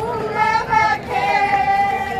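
Women wailing together in a mock mourning lament (siyapa), with long, high, drawn-out notes.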